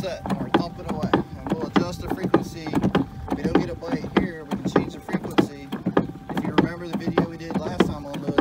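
Fish-attracting boat thumper running: its rubber mallet knocks on the inside of the fiberglass hull in quick dull thumps, about four to five a second, set to a high frequency.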